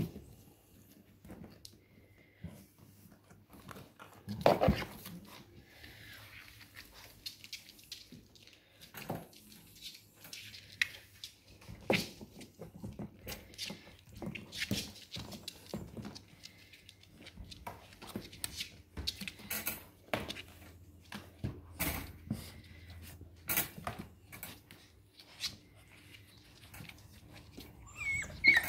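Labrador puppies scrambling about inside a plastic pet transport crate: scattered scrapes, knocks and rattles of claws and bodies against the crate and its wire door, the loudest about four and a half seconds in.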